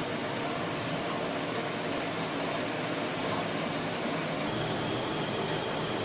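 Shower running: water spraying from the showerhead onto the tub surround in a steady hiss.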